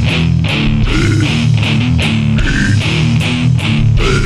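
Goregrind song: heavily distorted electric guitar riff over drums, with a cymbal or snare hit about two to three times a second.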